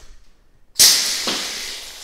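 A kitchen fire extinguisher filled with water discharging: a sudden hiss of spraying water about a second in, fading away gradually as the spray hits a concrete floor.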